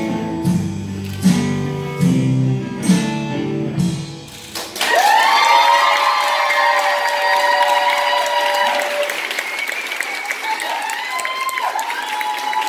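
Guitar-led music with a steady beat ends about four and a half seconds in. Audience applause and cheering with whoops follow.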